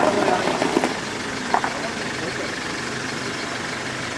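Engines of off-road 4x4s running as they roll slowly past in a convoy, a steady low hum, with voices close by in the first second.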